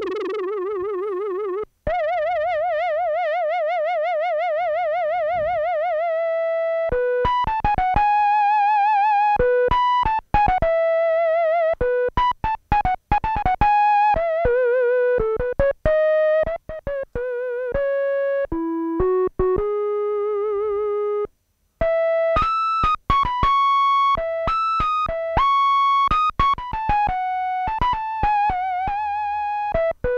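Behringer DeepMind 12 analog synthesizer playing a soft, filtered square-wave flute patch with exaggerated LFO vibrato. It sounds two long, quickly wavering held notes, then a melody of single notes.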